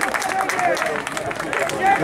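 Men's voices shouting and cheering, with scattered hand-clapping, from a small crowd of spectators and players celebrating a goal.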